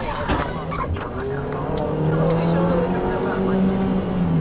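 Car road and engine noise recorded from inside a moving car by a dashcam. A few light clicks come early, then a steady low engine hum with a slightly rising tone as the car picks up speed.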